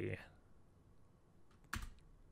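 A computer keyboard keystroke: one short, sharp click near the end, over otherwise quiet room tone.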